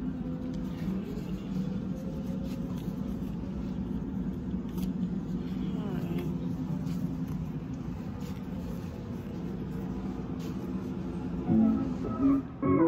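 Big-box store background: a steady low hum with faint, indistinct voices and occasional light clicks. Near the end, louder music comes in.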